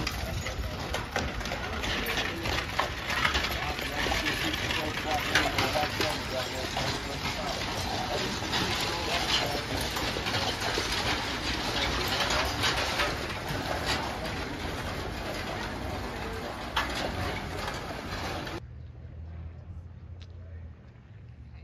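A horse-drawn stagecoach passing close by on a dirt street: irregular hoof clops and the clatter of its wooden-spoked wheels and coach body. It cuts off sharply near the end.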